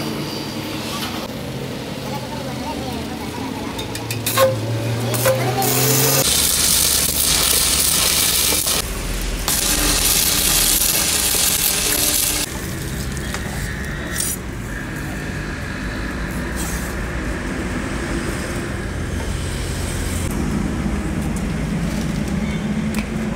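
Stick (shielded metal arc) welding on a cracked steel trailer axle, the arc crackling and hissing for about six seconds with a brief break partway through. A steady low hum runs before and after it.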